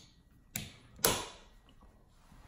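Two sharp knocks about half a second apart, the second louder and briefly ringing.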